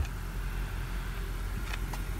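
Steady low hum of an idling car engine, with a faint click near the end.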